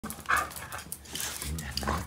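Pet dogs, with one short sharp bark a moment in.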